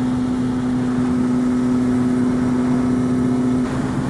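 Kawasaki ZX-6R 636 inline-four sportbike engine running at a steady cruising pitch on the road, under road and wind noise. The tone eases off briefly near the end.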